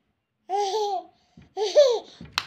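A toddler babbling and laughing: two short, high-pitched vocal sounds about a second apart.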